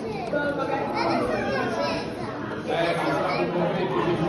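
Several people talking at once in the background, with no single voice clear enough to follow.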